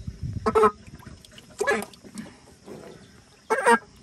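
Domestic fowl calling: three short, loud honking calls, the last the loudest.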